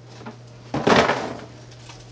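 Empty cardboard shipping box shoved off the table: one short, sudden rustling knock of cardboard about a second in.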